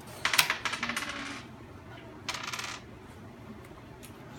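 A small die rolled on a tabletop, clattering in a quick run of bouncing clicks for about a second, then a second, shorter clatter a little past the middle.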